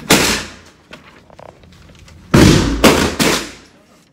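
Gunshots echoing in an indoor shooting range: one shot right at the start, then three loud shots in quick succession a little over two seconds in, each trailing off in the room's reverberation.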